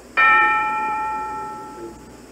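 A metal bell struck once just after the start, its tone ringing on and fading away over about a second and a half.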